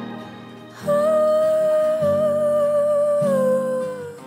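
Pop song: after a brief fade, a long wordless sung note is held for about two and a half seconds over sustained low chords, dipping slightly in pitch near the end.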